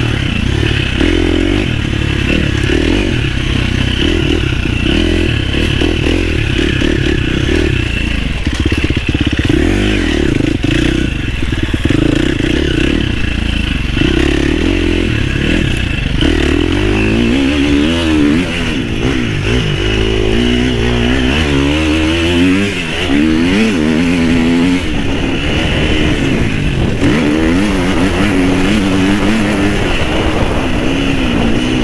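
Husqvarna FC350 dirt bike's single-cylinder four-stroke engine revving up and down at low trail speed. The pitch keeps swinging as the throttle opens and closes, more quickly in the second half.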